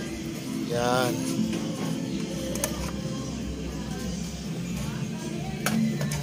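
Background music with steady low tones, a voice heard briefly about a second in, and a sharp light click near the end.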